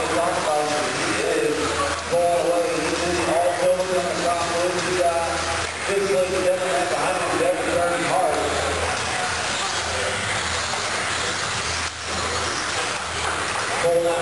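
Electric 1/10-scale 2WD RC buggies with 17.5-turn brushless motors racing on an indoor dirt track, motors whining and rising and falling with throttle, under steady indistinct talking.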